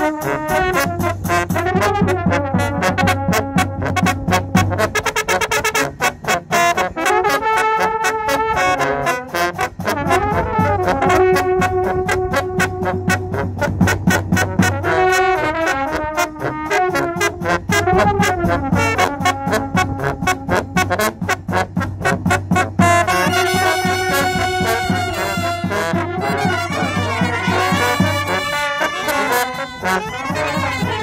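Romanian village brass band of trumpets, tenor horns and tuba, with a bass drum, playing a tune with regular drum strokes under the brass. From about two thirds of the way in, the trumpet melody climbs higher and wavers.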